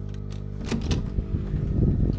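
Soft background music holding low sustained chords. Under it, a few clicks and some handling thumps come from a key-card cabin door lock being opened and the door pushed open, starting a little before halfway.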